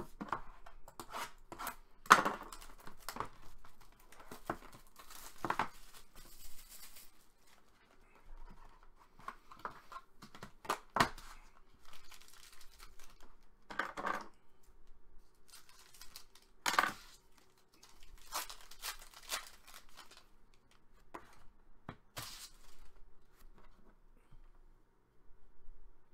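Plastic shrink wrap being cut and torn off a sealed cardboard box of trading cards, and the box opened: a string of rips, crinkles and light taps.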